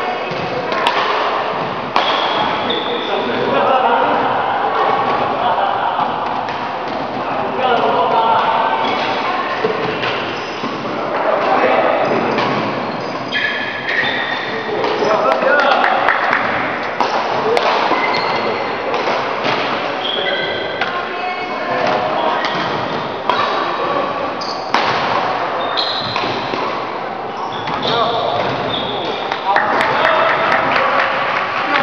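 Badminton rally: rackets striking the shuttlecock in sharp cracks, with shoes squeaking on the court floor between hits and people talking in the background.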